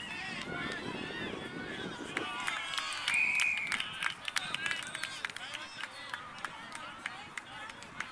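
Voices calling out across a junior Australian rules football match, with one short umpire's whistle blast of under a second about three seconds in. A scatter of sharp clicks and taps follows through the second half.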